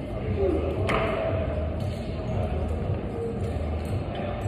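Climbing-gym hall ambience: indistinct voices in a large hall over a steady low hum, with one sharp clack about a second in.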